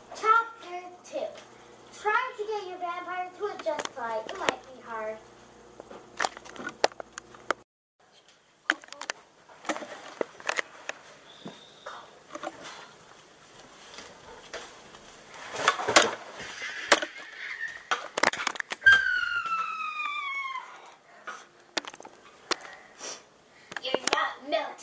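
Children's voices without clear words, wavering in pitch, with scattered knocks and handling bumps. About three-quarters of the way through comes a falling, high-pitched squeal.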